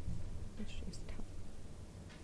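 Faint whispered voices over a low, steady room rumble.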